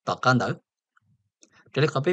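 Speech only: a narrator speaking Hmong, a short phrase, then a pause of about a second before the voice starts again near the end.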